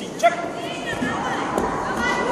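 A short, loud shout about a quarter second in, then several voices of spectators and coaches calling out over each other around a children's taekwon-do sparring bout.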